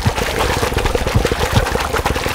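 Water churning and spattering above a male yacare caiman as he vibrates underwater in his courtship display. It is a dense, rapid crackle of droplets over a low rumble.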